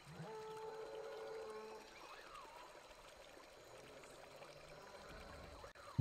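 Faint flowing water. In the first two seconds a soft steady two-note tone is held, and a short rising-then-falling call follows a little after.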